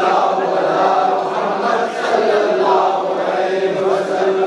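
A group of men chanting a devotional recitation together in one steady, continuous chant, with no beat from drums.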